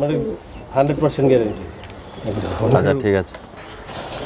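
Domestic teddy high-flyer pigeons cooing: three wavering coos about a second apart.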